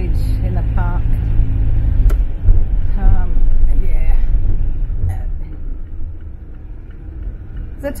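Car engine and tyre rumble heard from inside the cabin while driving, with a sharp click about two seconds in; the rumble eases after about five seconds.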